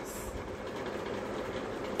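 Steady background noise: an even hiss and hum with no distinct events.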